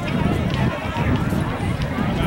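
Indistinct voices of people talking, with no clear words, over steady outdoor background noise.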